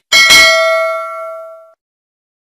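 Notification-bell sound effect of a subscribe animation: a click, then a bright bell ding whose tones ring out and fade over about a second and a half.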